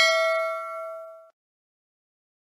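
Notification-bell ding sound effect from a subscribe-button animation, ringing out and fading away, stopping about a second and a quarter in.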